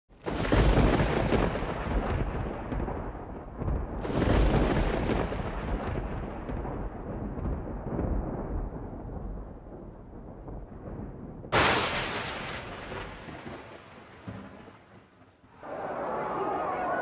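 Thunder: long low rumbles swelling about half a second in and again around four seconds, then a sudden sharp crack just before twelve seconds that rolls away and fades.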